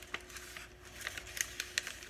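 Plastic gallon Ziploc bag crinkling and crackling as it is folded and pressed by hand, a quick series of small sharp clicks.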